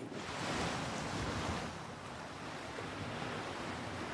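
Sea waves breaking and washing up a sandy beach: a steady rush of surf that swells a little in the first two seconds.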